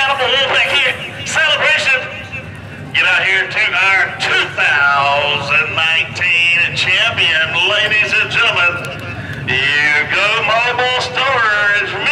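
Indistinct men's voices throughout, talking and calling out in long drawn-out shouts, over a faint low steady rumble.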